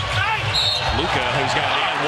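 Basketball game in an arena: a basketball bouncing on the hardwood court over a steady crowd murmur.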